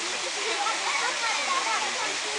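Several people's voices chattering in the background over a steady rushing hiss.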